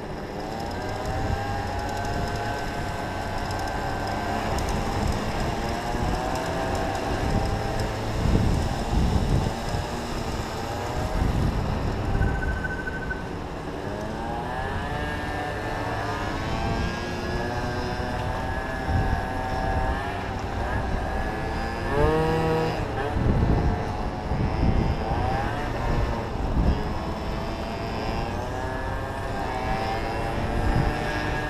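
Small motorcycle engine riding in traffic, its pitch rising repeatedly as it revs up and dropping back between gears or off the throttle, with a sharp quick rev about two thirds of the way through. Wind buffets the microphone throughout.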